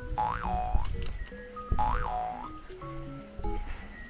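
Light background music with two springy boing-like pitch glides, about half a second and two seconds in, over low thuds of a child bouncing on a trampoline.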